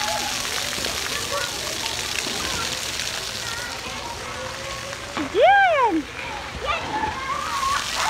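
Splash-pad ground fountain jets spraying and splattering water steadily, with children's voices around. About five seconds in, a child gives one loud call that rises and then falls in pitch.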